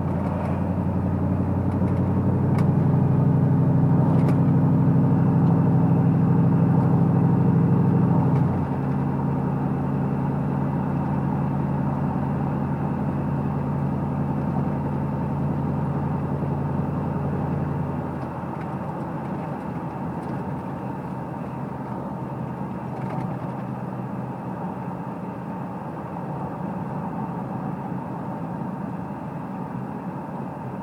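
Pickup truck cruising at about 40 mph, its engine and road noise heard from inside the cab. The engine note swells about two seconds in, falls back about eight seconds in, and drops lower again around eighteen seconds in.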